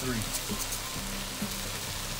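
Chicken and rice sizzling in a hot, oiled pot as the dry rice is stirred in, a steady hiss, under background music.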